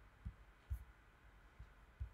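Near-silent room tone with three faint, dull low thumps at uneven spacing.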